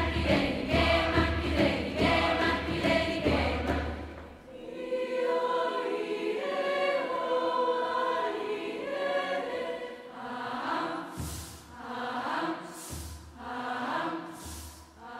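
Large youth choir singing a chant-like arrangement of Kraó native songs, with steady low drum beats under it for the first few seconds. The drum drops out, leaving held choral chords, then comes back near the end with short hissing bursts.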